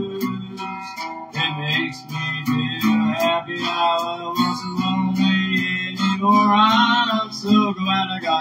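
Acoustic guitar strummed in a steady blues rhythm.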